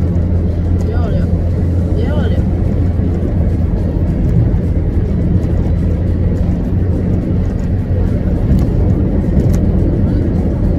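Steady low rumble of a car heard from inside the cabin. Two brief rising-and-falling pitched sounds come about one and two seconds in.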